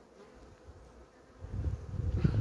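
Honeybees buzzing as a steady hum over an opened hive full of bees. About one and a half seconds in, a louder low rumbling noise comes in over the hum.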